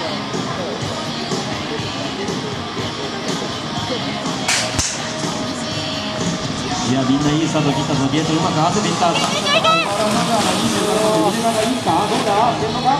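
Music with voices over it, growing louder from about seven seconds in as raised voices, up to shouting, come to the fore. A single sharp knock sounds about five seconds in.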